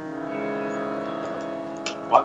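Harmonium holding a steady chord between sung lines of a Punjabi song, with a small click near the end.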